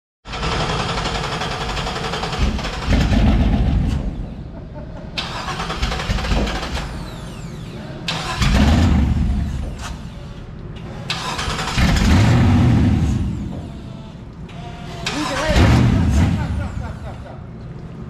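An engine installed in an old pickup on jack stands being started. It comes up in loud surges a few seconds apart, about four times, each one swelling to a louder low rumble and then falling back.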